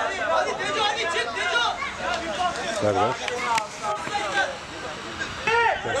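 Several men's voices calling out and chattering over one another, the hubbub of players and onlookers at a football match.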